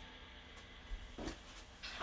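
Quiet room with a few faint, soft handling noises about a second in, as a towel and small items are picked up off a wooden floor.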